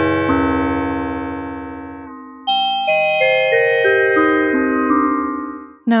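UDO Super 6 polyphonic synthesizer playing a run of stepped notes with a frequency-modulated tone: LFO 1, running in high-frequency mode, modulates the pitch of both oscillators (DDS 1 and 2). The first phrase dies away about two seconds in, a second starts half a second later and stops just before the end.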